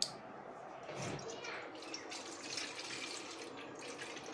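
Water pumped through a plastic hose pouring into a stainless steel bowl: a steady splashing hiss. A sharp click comes at the very start.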